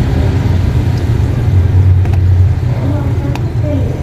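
A steady low rumble with faint voices under it and a few light clicks, about one a second.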